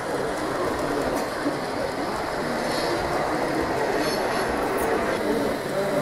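Z-scale model train of tank wagons rolling past along the track, a steady running sound of the tiny wheels on the rails.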